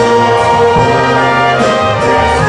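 Wind band playing: brass and saxophones hold sustained chords together with bassoon and flute, over a drum kit with a few sharp strokes.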